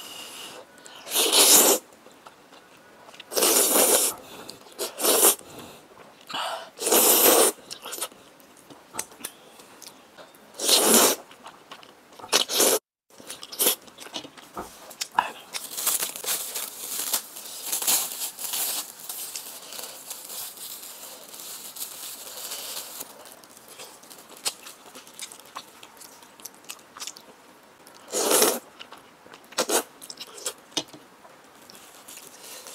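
Several loud slurps as spicy instant noodles in a creamy sauce are sucked up from chopsticks, in short bursts through the first dozen seconds and again near the end. In the middle stretch a thin plastic wrapper crinkles and rustles steadily for several seconds while an ice cream bar is handled.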